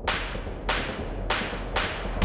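Sound effects for an animated logo intro: four sharp, whip-like hits, each trailing off quickly, coming about two a second over a steady low drone.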